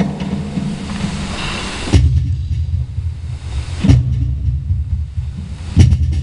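Cajón trio playing: a hiss that swells for about two seconds, then three deep bass strokes about two seconds apart over a low rumble.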